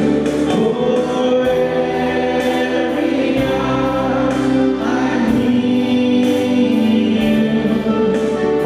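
A mixed group of young men and women singing a Christian worship song together, holding long notes over low notes that change every two seconds or so.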